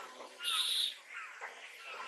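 Birds chirping in short, high notes that fall in pitch, several times, with a brief, louder hiss about half a second in.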